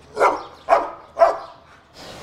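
A dog barking three times, about half a second apart, each bark short and falling in pitch.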